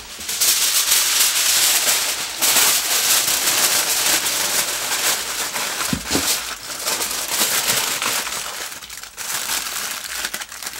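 Aluminium foil crinkling and rustling as it is wrapped and pressed by hand around a rock and its roots, with a dull knock about six seconds in.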